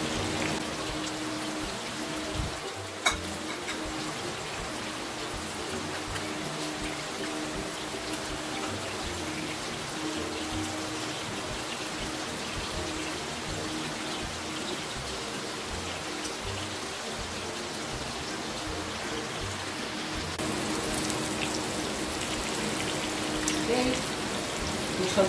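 A pork chop frying in hot oil in a pan: a steady sizzle and crackle, with a steady low tone underneath. One sharp click about three seconds in.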